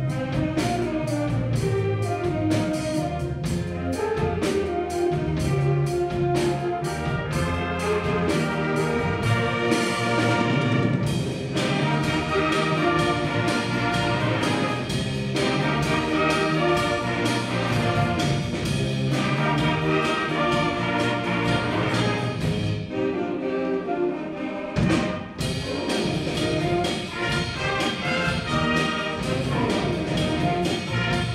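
Concert band playing: brass, saxophones and clarinets over a steady percussion beat. A little before the end the sound thins briefly, then a sharp hit brings the full band back in.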